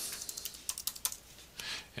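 Computer keyboard typing: a short, irregular run of keystrokes as a word is typed.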